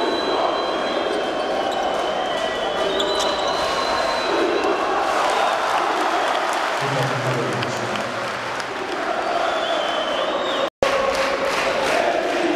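Basketball arena crowd noise during live play, with sneakers squeaking on the court and the ball bouncing. Near the end the sound cuts out suddenly, then picks up again on a crowd of fans cheering.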